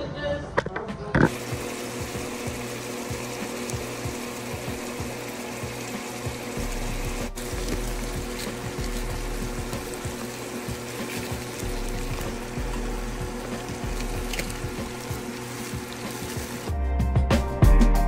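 Ground beef and bell peppers sizzling steadily in a skillet, with music underneath. Near the end, louder music with a drum beat comes in.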